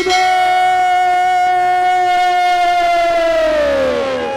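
A singer holding one long, loud note into a stage microphone. The note scoops up at the start, holds steady for about three seconds, and slides down in pitch near the end.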